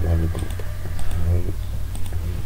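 Computer keyboard keystrokes, a few separate clicks, with a man's low voice briefly under them.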